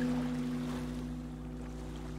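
Relaxing background music: a low, sustained piano chord struck just before this moment slowly fades, over a steady wash of water sounds.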